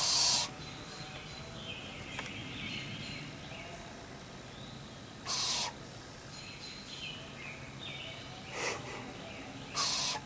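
Screech owl owlets giving short, harsh hissing calls of about half a second each, four in all, typical of owlets begging for food. Faint bird song runs behind.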